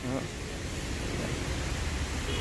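Steady background noise, a low rumble under a hiss, with a brief vocal sound right at the start.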